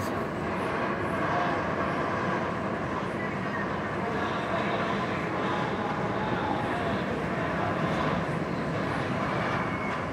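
Bolliger & Mabillard steel hyper coaster train (Nitro) running along its track, a steady even noise with no sharp impacts.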